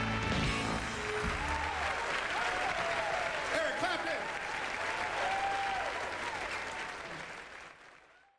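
The band's last held chord dies away about a second in, giving way to audience applause with cheering voices, fading out near the end.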